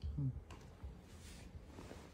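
A person's brief, low hummed murmur right at the start, followed by a few faint small clicks.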